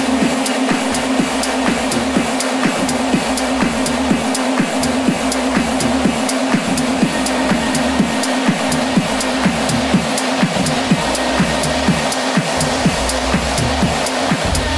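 Tech house DJ mix playing: evenly spaced hi-hat ticks over a held low synth tone, with little deep bass.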